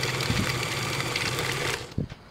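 Electric stand mixer running steadily at medium speed, its flat beater creaming butter, sugar and egg yolks in a stainless steel bowl: a steady motor hum that cuts off just before the end.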